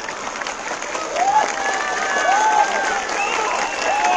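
A large crowd applauding and cheering, with voices calling out over the clapping; it swells about a second in.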